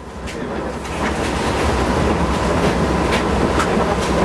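City bus interior: the engine runs with a low, steady rumble under rattles and a few sharp clicks from the body, fading in over the first second.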